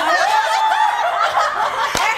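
A group of women laughing together, several high-pitched laughs overlapping.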